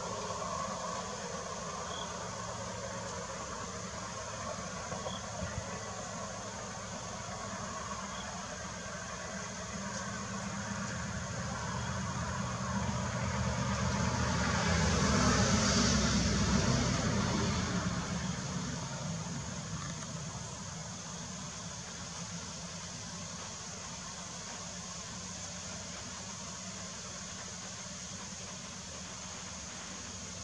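Steady outdoor background hum, with a vehicle passing that swells up and fades away around the middle.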